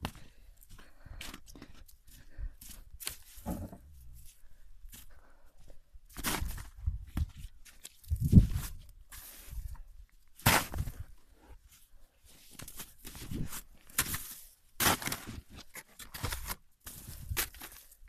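Blue plastic snow shovel scraping and crunching into packed snow in irregular strokes, with a heavy thump a little after eight seconds in.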